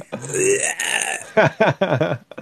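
A man laughing: a long breathy, wheezing exhale for about a second, then a few short voiced ha's.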